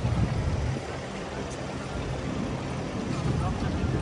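City street traffic noise, with a low vehicle engine hum that is strongest in the first second and then eases.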